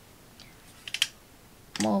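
A few light clicks over quiet room tone: a faint one about half a second in and a sharper pair around one second in. A single spoken word comes in near the end.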